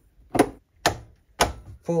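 Three short, sharp knocks about half a second apart from hands working the wires at an inverter's terminal block, as the freshly tightened wires are checked for snugness.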